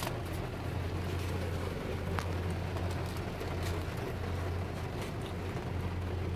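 Steady low hum of a car idling while parked, heard from inside the cabin, with a faint even hiss and a couple of small ticks.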